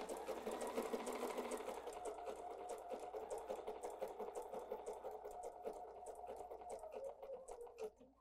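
Bernina 770 QE sewing machine running steadily at a slow speed, stitching a blanket stitch through wool appliqué, with a rapid ticking of the needle strokes. It stops just before the end.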